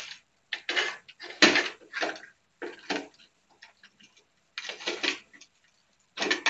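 Hands taking apart a plastic digital alarm clock: a series of short, irregular clicks, clatters and scrapes of plastic casing and small parts being handled.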